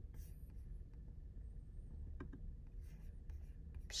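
Faint handling sounds at a computer mouse and keyboard: soft rubbing and a few light clicks over a low steady room hum.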